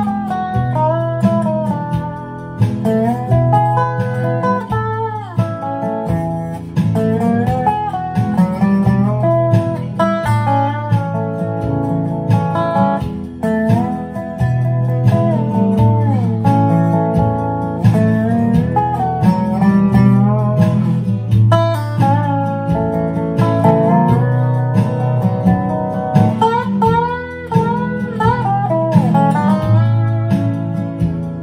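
Square-neck resonator guitar (dobro) played lap-style with a steel bar and fingerpicks: a run of picked melody notes in a bluegrass style, with the bar sliding the pitch between notes several times.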